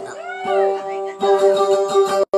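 Dayunday music: a voice slides up and then back down in pitch over a steady held accompaniment note, and about a second in the held tones grow fuller and carry on.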